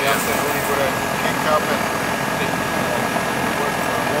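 York microchannel central air conditioner's outdoor condenser unit running steadily, its fan and compressor going, with a faint steady tone over the noise. The system is low on R-410A and refrigerant is being fed into its suction side.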